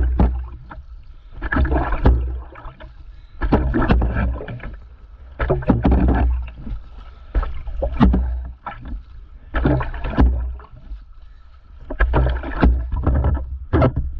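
Sea water sloshing and splashing in a regular rhythm, about one surge every two seconds, as a board is paddled out through the sea, over a steady low rumble.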